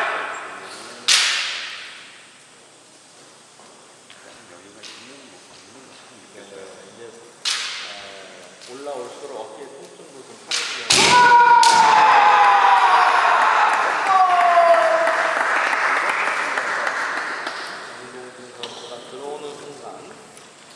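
Kendo fencers' kiai shouts and the sharp cracks of bamboo shinai strikes and stamping feet on a wooden floor, echoing in a large hall. Single cracks come about a second in and again midway, then two quick cracks just before the strike exchange, followed by a long, loud drawn-out shout that falls in pitch over several seconds.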